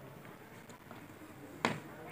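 A single sharp click about one and a half seconds in, over faint background noise.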